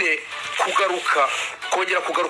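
Speech only: a voice talking on without a break, in a recorded, broadcast-like manner.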